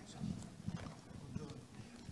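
Microphone handling noise: irregular muffled low bumps and rustles as a handheld microphone is held and moved.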